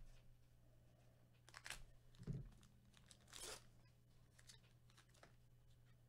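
Faint tearing and crinkling of a foil trading-card pack being ripped open and handled, in several short rustles over a steady low hum.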